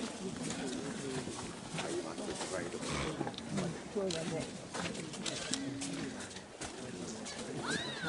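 Indistinct chatter of several people talking at once, with scattered small clicks.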